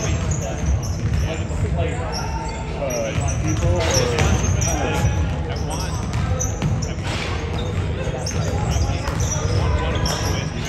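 Basketball game play in a gym: a ball being dribbled on the hardwood floor, with sneakers squeaking and voices calling out across the echoing hall.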